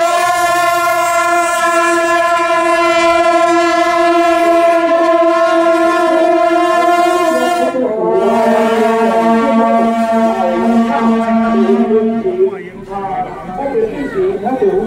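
A group of long straight brass procession horns (shaojiao) blown together in one long held note. About eight seconds in they change to a second, lower held blast, which fades about a second and a half before the end.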